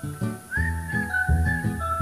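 Background music: a high, whistle-like melody that slides up about half a second in, over a steady rhythmic accompaniment.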